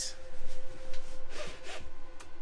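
Pleated night shade on a camper van window being pulled down by hand: short rubbing, sliding sounds at about two thirds of a second and again at about a second and a half in, over a faint steady hum.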